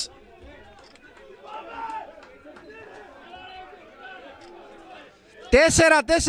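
Faint chatter and shouting of several voices from the pitch side, briefly a little louder about two seconds in, as players celebrate a goal. A man's commentary voice starts loudly near the end.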